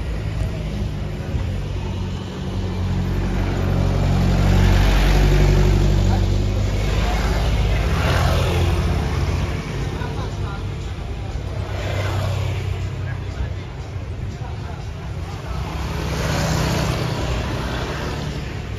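Road traffic passing close by: a low engine rumble from cars and motorcycles that swells and fades several times as vehicles go past, loudest about five seconds in.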